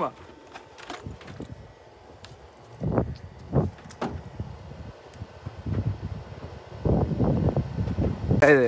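A few scattered knocks and clatter of tools being handled, with a louder stretch of handling noise near the end.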